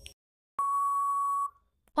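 Quiz countdown-timer sound effect: the tail of a short electronic beep, then about half a second in a single steady beep lasting nearly a second, marking that time is up before the answer is given.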